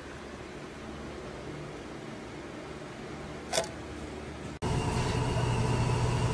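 Low steady machine hum with one sharp click about three and a half seconds in. The sound cuts off abruptly a little past four and a half seconds and comes back as a louder, steady hum with a clear pitched drone.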